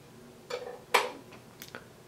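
A few light metallic clicks and knocks from a Granberg 106B chainsaw chain filing jig being handled and adjusted on the bar, the loudest about a second in.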